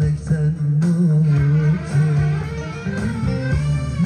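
Amplified Turkish song: a man singing into a handheld microphone over music with guitar and a strong, steady bass line.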